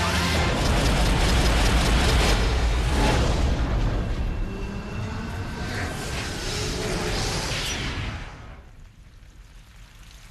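Cinematic trailer sound design: a deep rumbling boom, heaviest in the first three seconds with a hit about three seconds in, then dying away about eight seconds in.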